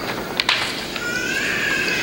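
Paper rustles briefly as a printed sheet is lifted and moved on a desk, then a high, drawn-out whine rises and falls for about a second.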